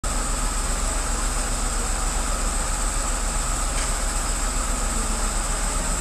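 Parked fire engine's engine running steadily at idle, a constant low hum with a thin high tone held over it.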